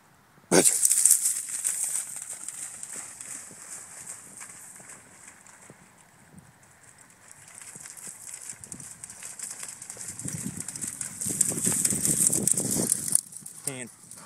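Dry grass and brush rustling and crackling as a springer spaniel bursts off through it close by, starting suddenly about half a second in. It eases as the dog gets further away, builds again as it comes back through the cover, and stops abruptly about a second before the end.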